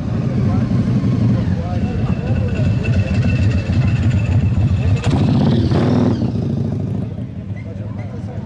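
Big V-twin cruiser motorcycle engines, Harley-Davidsons, running as bikes ride slowly past close by: a deep, fast-pulsing rumble that stays loud until about seven seconds in and then drops away. Crowd chatter is mixed in.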